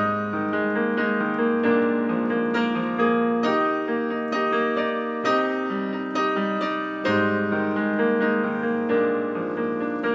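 Solo digital piano playing an instrumental passage: chords struck every half second or so over held low bass notes, with a new bass note at the start and again about seven seconds in.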